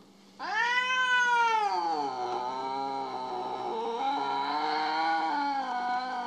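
Domestic cat yowling in one long, drawn-out wail that starts about half a second in, first arching up and down in pitch, then settling lower and wavering on. It is a complaining yowl from a cat upset with its owner.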